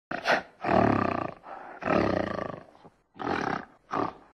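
Animal roar sound effect: a run of five rough roars, the longest about a second each, with short gaps between them.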